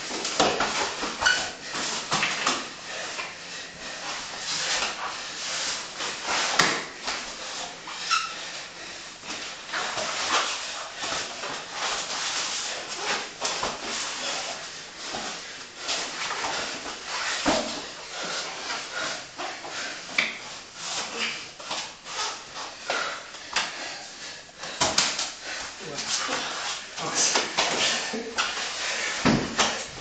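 Two grapplers rolling on mats: continuous shuffling, rubbing and thudding of bodies on the mat, mixed with heavy breathing and short grunts.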